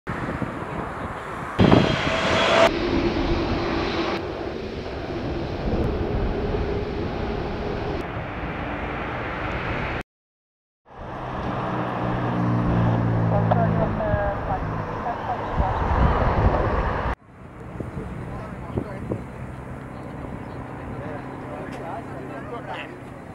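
Jet engines of a Boeing 747-8F freighter on approach, in a string of edited clips joined by abrupt cuts, with a second of silence about ten seconds in. The engine tones step downward around the middle.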